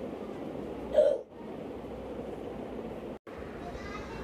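Steady background noise with one short, loud vocal sound about a second in; the audio cuts out for an instant just after three seconds.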